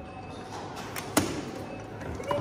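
Hard-shell rolling suitcase pulled across a polished stone floor, its wheels giving a steady rolling rumble, with two sharp clicks about a second in.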